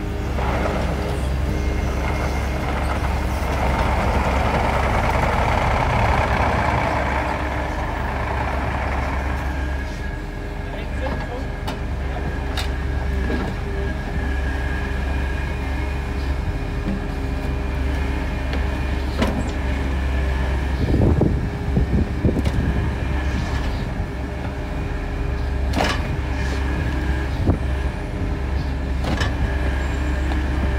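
Mini excavator's engine running steadily as it digs out a tree stump, with scattered sharp knocks, a cluster of them a little past two-thirds of the way through.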